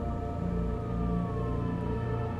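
Background film score of sustained, held tones over a low bass. A single thin tone slides slowly downward through it.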